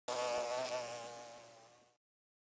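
A bee's buzz, wavering slightly in pitch, starting at once and fading away to nothing over about two seconds.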